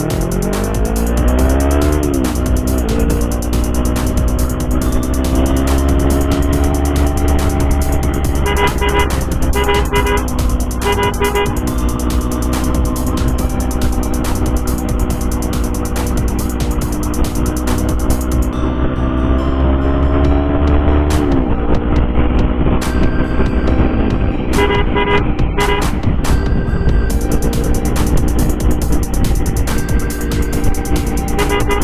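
Sport motorcycle engine accelerating, its pitch rising, dipping at a gear change and then holding steady at cruising speed, with another dip and rise about two-thirds of the way through. Two bursts of rapid repeated horn toots sound, one about a third of the way in and one near the end, as is usual when clearing traffic for an ambulance escort.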